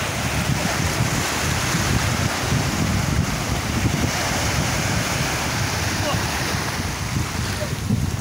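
Wind buffeting the microphone: a steady, rushing rumble of noise with no pauses.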